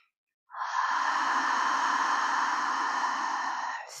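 A woman's long, audible exhale close to the microphone, a breathy sigh that starts about half a second in and lasts about three seconds, emptying the lungs.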